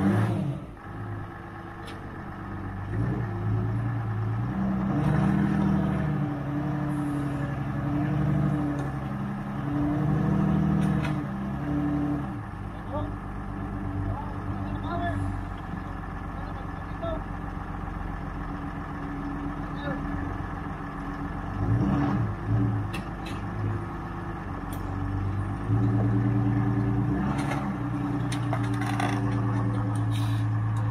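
Large forklift's engine running under load, rising in speed several times as it works the heavy tracked machine, with occasional brief knocks.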